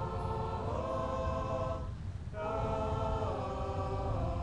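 Marching band's soft, sustained choir-like chords: one chord held, gliding into the next, a brief break about two seconds in, then a new chord held.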